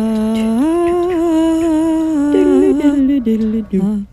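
A single voice humming a slow, wordless melody in long held notes that step between a few pitches, moving up a step about half a second in; it cuts off at the end.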